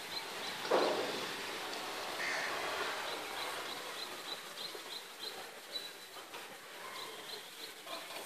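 Outdoor background with small birds chirping, a string of short high chirps. A brief low sound comes about a second in.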